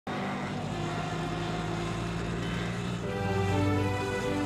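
Background music of sustained, held notes that starts abruptly, with more notes coming in about three seconds in.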